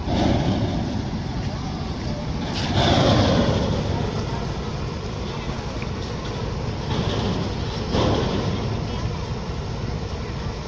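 Outdoor riverside background noise: a steady low rumble with indistinct voices. It swells louder for about a second and a half around three seconds in, and again briefly near eight seconds.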